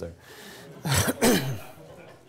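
A man clearing his throat once, about a second in: a short rough rasp followed by a brief voiced sound falling in pitch.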